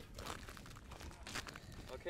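Faint rustling and crunching handling noise with a few small clicks, as a walleye is unhooked by hand.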